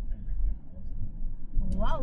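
Low, steady rumble of a car in motion, heard from inside the cabin, with a voice exclaiming "wow" near the end.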